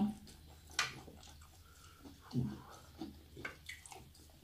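Faint eating sounds at a table: a few soft clicks and small mouth noises, with one sharper click about a second in.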